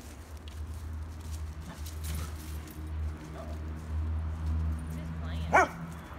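A dog gives a single short, high yip near the end, the loudest sound here, over a steady low rumble on the microphone.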